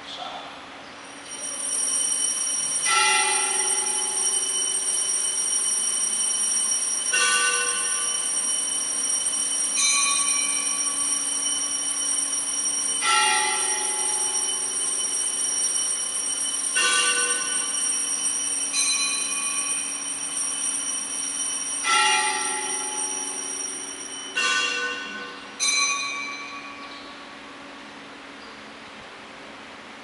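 Altar bells rung for the elevation of the chalice at the consecration: three differently pitched bells struck in turn, the round of three repeated three times, each stroke ringing on over a steady high shimmer of ringing. The bells stop about 26 seconds in, leaving room tone.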